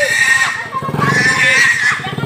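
A wild pig squealing in distress as it is held on a catch pole, in repeated shrill cries, the longest and harshest in the second half.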